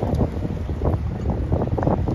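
Wind buffeting a phone's microphone, a steady low rumble, mixed with irregular rustling and knocks as the phone is carried against a shirt while walking.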